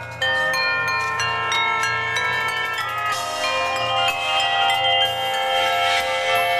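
Drum corps front ensemble playing a ringing, sustained chord on metal bells and mallet keyboards. It comes in suddenly just after the start and swells fuller and brighter about three seconds in.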